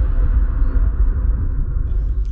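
Low, uneven rumble of room noise picked up by the presenter's microphone before any speech.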